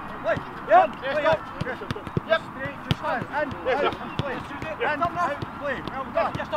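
Footballs being kicked in a training drill: sharp thuds at irregular intervals, mixed with players' shouts and calls.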